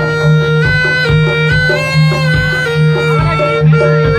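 Traditional East Javanese bantengan music: a reedy wind instrument, the slompret shawm, plays a long-held melody that steps up and down in pitch over a steady drumbeat and a repeating low pulse.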